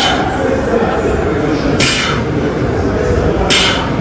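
Indistinct voices and room noise in a large gym hall, with three short hissing swishes: a brief one at the start, one about two seconds in and one near the end.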